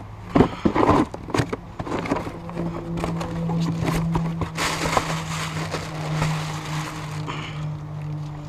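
Cardboard parts box being handled and opened: a few sharp knocks and flap noises, then crinkling of the plastic wrapping around the part, over a steady low hum.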